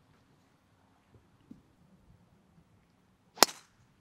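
A driver striking a golf ball played straight off the turf without a tee: one sharp crack of the strike near the end.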